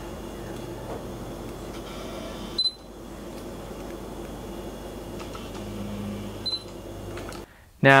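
Autofocus motor of a Sony 50mm F2.8 Macro FE lens running as it drives focus, a steady low whir. Over it, the camera gives a short high beep about two and a half seconds in and again about six and a half seconds in, marking focus lock.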